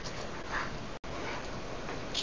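Steady room noise in a quiet meeting room, with one faint, brief sound about half a second in. The sound drops out for an instant at about one second.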